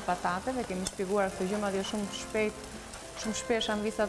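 Gnocchi sizzling in a frying pan as they are stirred, under a woman's voice talking throughout.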